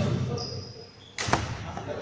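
Badminton rally in a reverberant sports hall: two sharp hits on the shuttlecock about a second and a quarter apart, each ringing out briefly in the hall, with footfalls on the wooden court floor.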